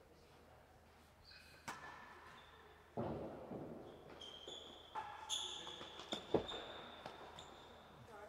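A real tennis rally: the hard ball is struck by rackets and knocks off the court's walls and floor in a string of separate hits. There is a longer rumbling hit about three seconds in, and the sharpest thud comes just after six seconds. High shoe squeaks on the court floor come in between.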